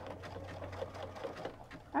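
Sewing machine stitching a shell tuck stitch along a minky plush binding, its motor humming steadily with a fast needle rhythm, then stopping about two-thirds of the way in.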